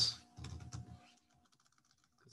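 A short run of faint computer keyboard keystrokes about half a second in: keys pressed to delete lines of code.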